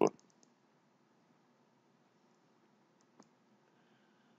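Computer mouse clicking: a few quick faint clicks just after the start and a single click about three seconds in, over quiet room tone.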